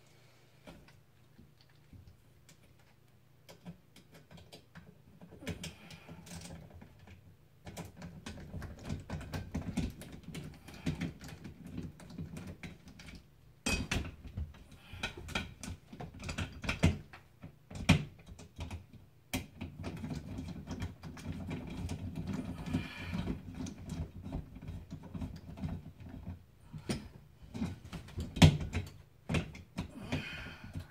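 Irregular clicks, taps and scrapes of hands working on a ceiling light fixture, taking off its cover and changing the bulb. Faint for the first few seconds, then busier from about seven seconds in, with a few sharper knocks.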